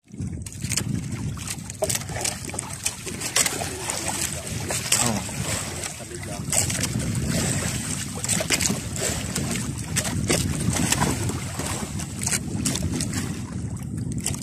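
Wind buffeting the microphone and water sloshing against the hull of a small outrigger boat drifting at sea, with irregular knocks from gear being handled in the boat. No engine is running.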